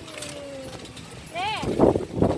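High-pitched voices, likely a young child's: a drawn-out falling hum, then a short high rising-and-falling call about one and a half seconds in, followed by a loud burst of voice near the end.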